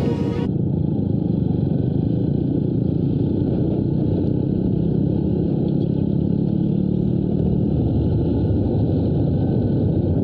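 Yamaha YTX 125's single-cylinder four-stroke engine running steadily while riding, mixed with road and wind noise. A music track cuts off about half a second in.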